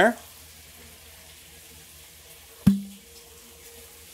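Chicken, lemon zest and thyme sizzling in a hot Griswold cast-iron skillet: a steady, quiet hiss. About two-thirds of the way through comes a single sharp knock with a short low ring.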